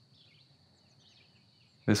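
Faint bird chirps, several short calls scattered through, over a quiet room with a thin steady high-pitched tone. A man's voice starts just before the end.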